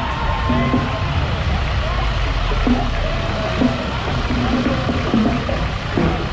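A farm tractor's engine running low and steady as it pulls a tram of riders past. It is heard under the chatter of a crowd, with music in the background.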